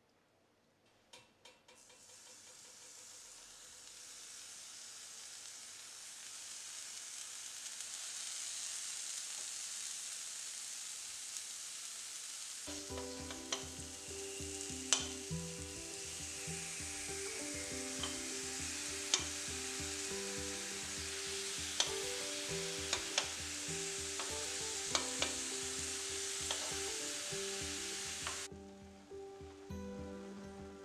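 Oil-brushed apricot halves sizzling on the hot ribbed plate of an electric contact grill as they soften and caramelize. The sizzle builds over the first several seconds, then holds steady with a few sharp ticks, and cuts off abruptly shortly before the end.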